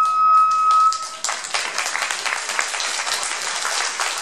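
Iwami kagura music ends about a second in on a long held flute note over regular percussion strikes. The audience then applauds steadily.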